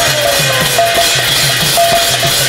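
Pala ensemble music: a two-headed barrel drum beats low strokes that bend down in pitch, about four a second, while large brass hand cymbals clash in time. A singer's held note slides down and fades in the first half-second.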